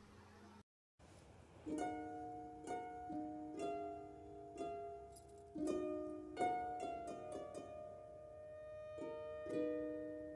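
Soft background music of plucked notes, one after another, starting nearly two seconds in.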